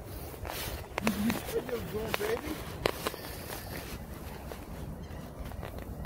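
Footsteps and rustling through grass and weeds, with a few sharp clicks from handling, about one and three seconds in. A faint voice is heard briefly in the first half.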